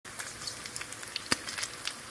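Bacon strips sizzling in hot fat in a nonstick frying pan, a steady hiss dotted with frequent small crackles and pops, one louder pop just past the middle.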